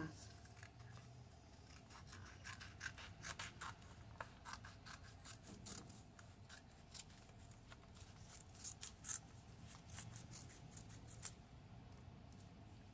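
Scissors cutting a folded sheet of paper into a leaf-shaped template: a faint run of short snips with paper rustling in between.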